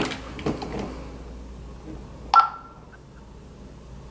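Home security alarm keypad being disarmed: a knock at the start, a few faint key taps, then one short beep from the keypad a little past halfway.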